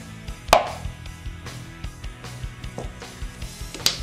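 Background music with a steady beat, under a sharp click about half a second in and another near the end as a plastic squeeze bottle of honey is handled over a bowl.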